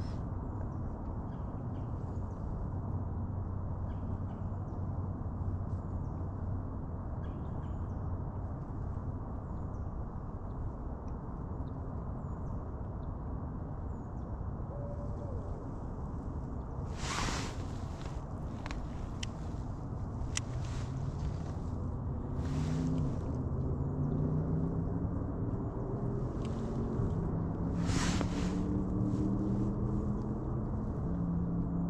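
Electric drive motor of an Old Town ePDL 132 pedal kayak humming low over a steady rumble, its pitch shifting and getting a little louder in the second half as the kayak turns. A few sharp clicks come in the second half.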